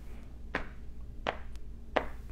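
Hands patting the thighs, tapping out a steady beat: three pats, about one every three-quarters of a second.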